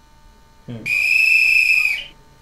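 A single steady, high-pitched whistle blast about a second long, sounded as a wake-up call. It comes right after a brief murmured "hmm".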